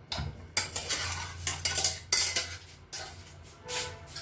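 Kitchen utensils and dishes clinking and clattering in a quick run of sharp knocks and scrapes over the first couple of seconds, with one more clatter near the end.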